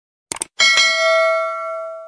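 A quick clicking sound, then a single bell ding that rings out and fades away: the notification-bell sound effect of an animated subscribe button being clicked.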